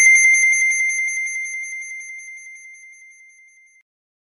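A single high, bell-like chime struck once right at the start, ringing out and fading away over nearly four seconds with a slight wobble as it dies.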